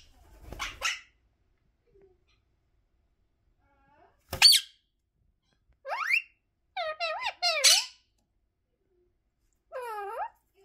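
Indian ringneck parakeet calling: a sharp high squawk about four seconds in, then a rising call and a short run of chattering, voice-like calls between about six and eight seconds, with silent gaps between.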